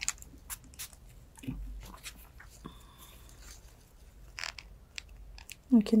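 Mundial 722 steel cuticle nippers snipping away thick excess cuticle on a toenail: scattered small, sharp clicks and crunchy snips a second or so apart, with one louder snip past the middle.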